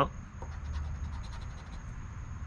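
A coin scraping the latex coating off a paper scratch-off lottery ticket, a run of quick rasping strokes.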